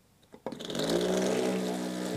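Mini vortex mixer's motor starting about half a second in as a paint bottle is pressed onto its cup. It rises in pitch as it spins up, then runs at a steady hum, with the steel ball-bearing shakers inside the bottle rattling.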